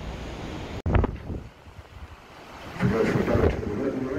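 Wind buffeting the microphone on a cruise ship's balcony over open water, with a low rush of wind about a second in. From near three seconds an indistinct voice joins it: the park ranger's commentary carried to the balcony over the ship's loudspeakers.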